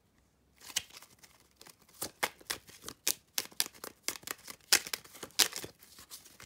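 A deck of paper playing cards being shuffled by hand: a quick, irregular run of sharp card snaps and flicks, beginning about half a second in.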